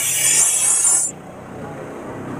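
A glittering, glassy sparkle sound effect with a rising sweep, cutting off about a second in and leaving a fainter low background. The audio is pitch-shifted and processed by a 'G Major' video edit.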